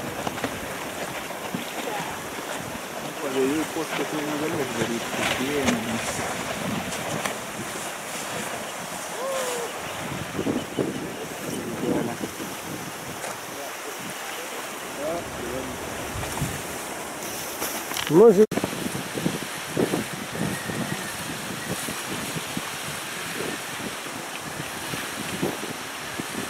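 Steady wind buffeting the microphone over choppy, wind-whipped lake water.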